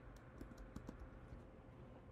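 A few faint, scattered computer keyboard keystrokes as a terminal command is finished and entered, over a low steady hum.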